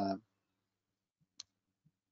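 A man's voice trails off, then near silence broken by a single short click a little past halfway.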